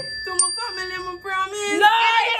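A young woman singing a line of a song into a toy microphone, in held notes that step up and down. A high, thin bell-like ding rings out about half a second in.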